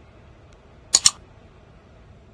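Computer-mouse click sound effect from a like-and-subscribe overlay: a quick double click, press and release, about a second in, over faint steady background noise.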